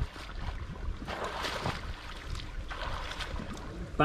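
Swimming-pool water splashing in noisy bursts, about a second in and again near three seconds, over a low rumble of wind on the microphone.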